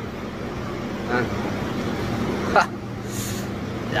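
Steady mechanical hum of cold-room refrigeration machinery, with a constant low tone. A man gives a short 'ah' about a second in, and a brief, loud falling sound comes a little past halfway.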